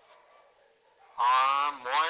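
About a second of near silence, then a man's voice over a video call, played through a phone's loudspeaker into a microphone: a drawn-out vowel held about half a second, followed by another sound starting near the end.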